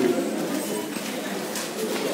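Busy checkout background: a low murmur of distant voices with light rustling as groceries are packed into a bag.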